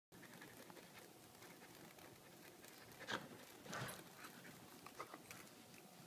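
Goldendoodle breathing and panting faintly, with two short, louder bursts of sound about three and four seconds in.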